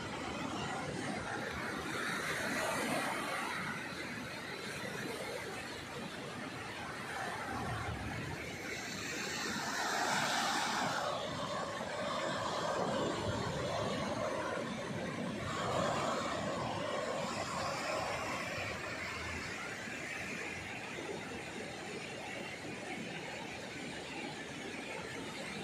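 Sea waves breaking and washing up the shore, a rushing noise that swells and eases several times.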